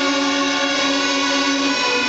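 Student string orchestra of violins and cellos playing long sustained notes, the chord shifting to a lower pitch near the end.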